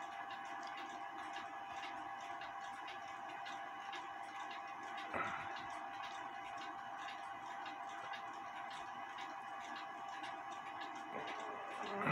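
Steady, quick ticking of a repaired Lux 1928 Blossom Time clock's spring-driven hairspring-balance movement, now running again. There is a single brief knock about five seconds in.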